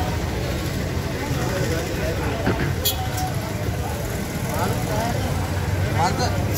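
Street background: a steady low hum of road traffic, with people talking nearby and one sharp knock about three seconds in.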